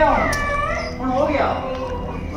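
A dog whining and yelping while held on a rope leash: a few high, wavering cries that rise and fall in the first second and a half.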